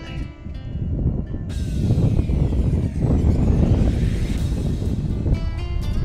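Background music, overtaken about a second and a half in by loud wind buffeting the microphone in open country; the music tones return near the end.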